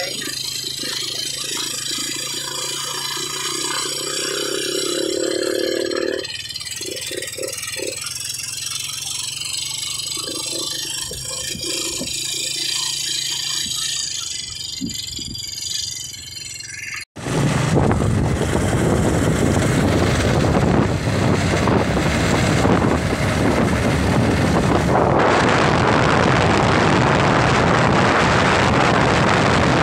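A steady low engine drone while crossing the water; then, after an abrupt cut about two-thirds of the way in, loud wind rushing over the microphone of a moving motorcycle, with its engine under it.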